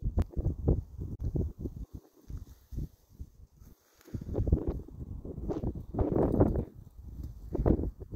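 Irregular low thumps and rustling close to the microphone, falling quiet for about two seconds in the middle.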